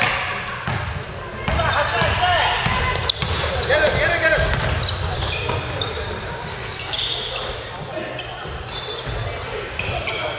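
Basketball game play on a wooden gym court: the ball bouncing, sneakers squeaking and players calling out, all echoing in the large hall.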